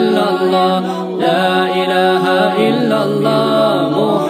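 Devotional nasheed chanting: several voices sing a gliding, ornamented melody over a steady held low drone.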